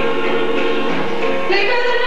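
Gospel song sung with musical accompaniment, the voices holding long notes; about a second and a half in, the singing moves to a new, higher held note.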